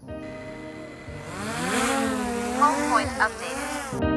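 A motor-like whine that rises and falls in pitch, with a rushing whoosh building from about a second in, over soft background music.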